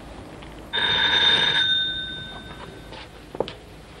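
Electric doorbell ringing once for about a second, then dying away.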